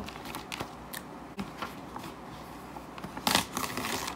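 Light clicks and taps of a marker being handled and uncapped, then a short burst of paper rustling about three seconds in as a sheet of printer paper is picked up and handled.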